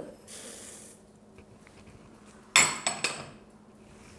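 Flocão poured from a glass bowl into a stainless-steel mixer bowl makes a soft hiss. About two and a half seconds in comes a sharp, ringing clink of the glass bowl knocking against the metal bowl, with a smaller knock just after.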